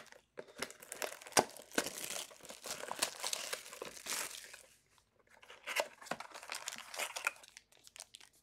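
Plastic-and-foil wrapper of a trading card pack crinkling and tearing as it is handled and opened: a run of small crackles and clicks, with a brief pause about halfway through.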